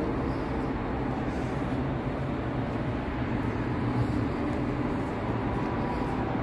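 Steady low rumble with a faint hum in a concrete parking garage, unchanging throughout.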